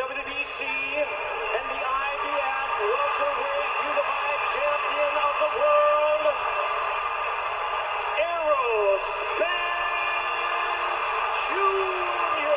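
Boxing ring announcer's voice over the arena public-address system, with long drawn-out syllables, against steady crowd noise, heard as thin, band-limited playback of the fight video.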